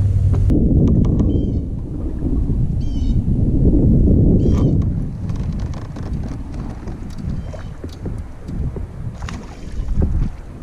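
Wind buffeting the microphone with a steady low rumble, over water slapping against a kayak hull; a few faint high chirps.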